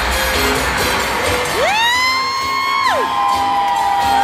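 Club music playing loudly with audience members whooping over it: two long held cries that swoop up about a second and a half in and slide back down, the second trailing off near the end.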